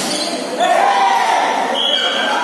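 A single sharp smack of a volleyball being hit or landing, echoing in a large hall. About half a second later comes loud, high-pitched shouting from several voices as the rally ends.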